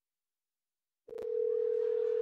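Dead silence for about a second, then a click and a steady single-pitched telephone tone that holds unbroken to the end.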